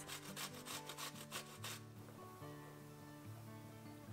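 Vegetables grated on a small flat metal hand grater over a saucepan: quick repeated strokes, about five a second, stopping about two seconds in. Soft instrumental music plays underneath.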